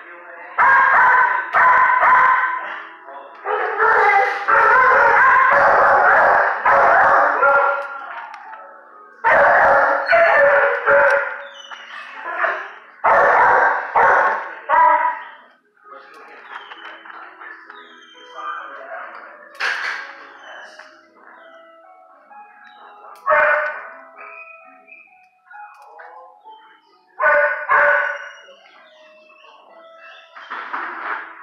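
Dogs barking in shelter kennels: loud, dense barking through the first half, then only occasional, fainter barks.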